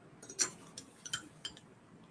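A metal fork tapping and clinking against glassware about six times, the loudest clink about half a second in, as it fishes a wild hibiscus flower out for a glass of champagne.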